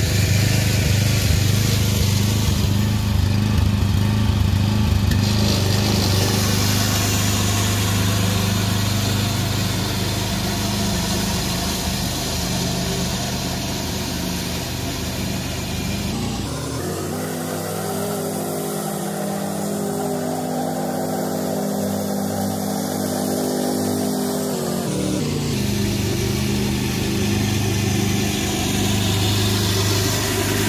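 McCulloch Mowcart 66 riding mower's engine running steadily as it is driven on a test lap with its newly fitted transaxle. From about halfway to about 25 seconds in, the engine note changes and is slightly quieter, then it returns to its earlier steady note.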